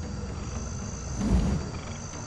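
A crocodile growls low and briefly about halfway through, over a faint steady background of swamp sounds.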